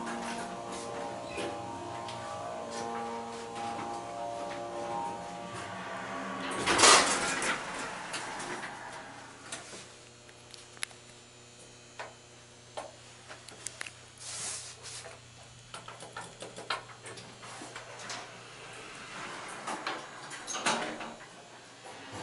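Hydraulic elevator doors sliding, loudest about seven seconds in, then a steady low hum with scattered short clunks.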